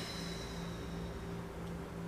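A slow exhale, a soft breathy hiss that fades out about a second in, over a steady low hum.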